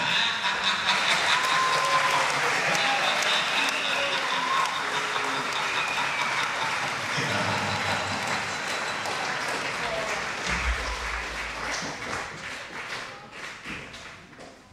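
Audience applause breaking out abruptly the moment the dance music stops, with cheering voices over it, dying down over the last couple of seconds.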